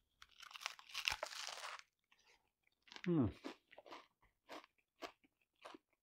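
A big bite into a taco in a crispy Parmesan cheese shell, the shell crunching and crackling for nearly two seconds, followed by soft, sparse crunching as it is chewed.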